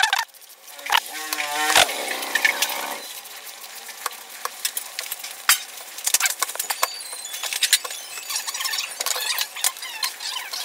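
Hand peeler scraping and shredding a firm green vegetable over a plastic colander: a run of quick, irregular scraping strokes and small clicks. About a second in there is a brief pitched, wavering squeal lasting a couple of seconds.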